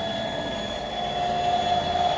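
Stepcraft M.1000 CNC's stepper-driven gantry moving the spindle across to the tool rack for an automatic tool change: a steady motor whine over a rushing noise, the whine growing a little louder toward the end.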